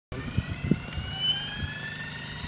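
Radio-controlled model helicopter spooling up on the ground: a thin whine from its motor and rotor head, rising slowly in pitch. There are two low thumps in the first second.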